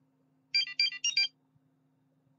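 Short electronic alert tone: three quick groups of high beeping notes, lasting under a second, starting about half a second in.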